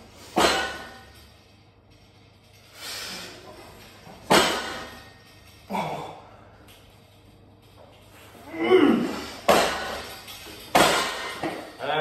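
Home multi-gym weight stack clanking during lat pulldown reps: about five sharp metallic knocks, unevenly spaced, with softer strained breaths between them.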